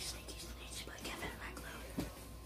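Faint whispered, hushed speech in a quiet small room, with a short click at the very end.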